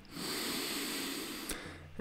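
A slow, deliberate breath in, audible for about a second and a half before fading, taken as part of a guided breathing exercise; a small click near the end.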